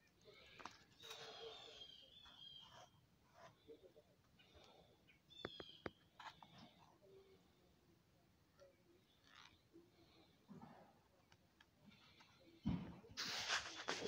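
Mostly quiet, with faint bird chirps scattered through the first six seconds. Near the end comes a louder rustling, the noise of the phone being handled.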